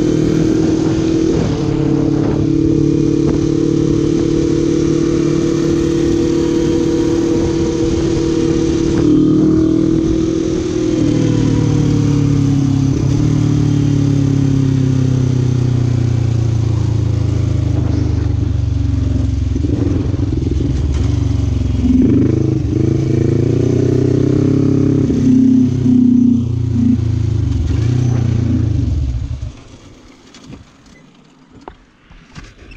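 Quad bike (ATV) engine running under way. Its pitch drops around ten seconds in, rises and falls a few times towards the end, then the engine cuts out just before the end: the breakdown whose cause is in question, whether out of fuel, a flat battery or a dead fuel pump.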